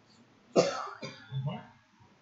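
A girl coughs sharply about half a second in and again about a second in, then clears her throat with a short low sound.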